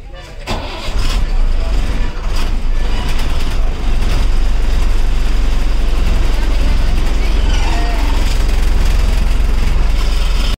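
Diesel engine of a front-engined city bus starting, heard from the driver's cab beside the engine cover. It turns over unevenly for a few seconds, then settles into a steady, loud, deep idle about four seconds in.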